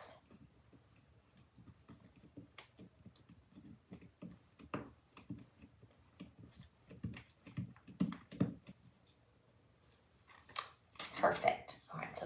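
Faint handling sounds of a rubber stamp being pressed down onto a small wooden ornament: light taps and rustles, with a few soft knocks about five and eight seconds in. A woman starts talking near the end.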